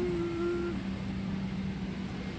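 Steady airliner cabin noise at the gate: the rush of the ventilation air with a low, even hum. A brief, steady higher hum sounds during the first second.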